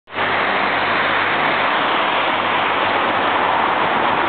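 A loud, steady rushing noise that starts suddenly and stays even throughout, with a faint low hum beneath it.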